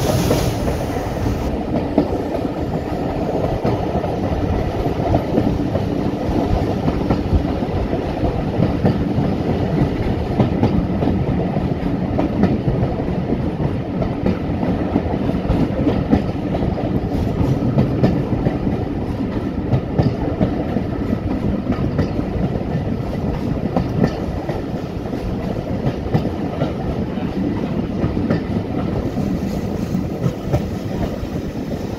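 Class 25 diesel locomotive D7612 hauling its train at steady speed, the wheels clicking over the rail joints over a continuous low rumble.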